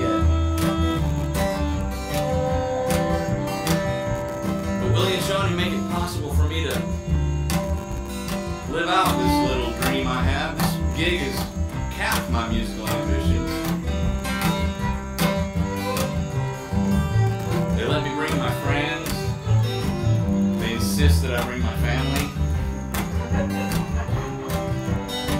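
Acoustic string band playing a country tune: strummed acoustic guitar over upright bass notes, with a fiddle playing phrases above.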